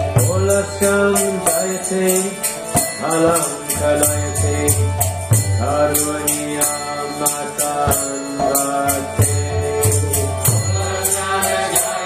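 A man chanting a Sanskrit devotional prayer in a sung, held melody over a steady low drone, kept in time by a steady rhythm of small hand cymbals.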